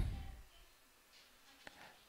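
Near silence: quiet room tone in a pause between spoken chess moves, with one faint click about one and a half seconds in.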